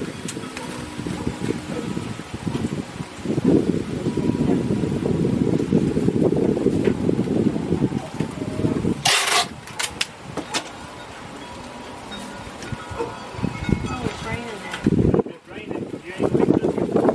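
Indistinct talk among several people, too unclear to make out, with low rumbling through the middle and a short sharp noise about nine seconds in.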